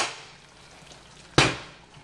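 A glass pan lid with a metal rim set down onto a stainless steel skillet: one sharp clank about one and a half seconds in that rings briefly and fades.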